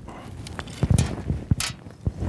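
Handling noise: a few short knocks and clicks in the second half, from a catfish float and its rig being handled in the hands.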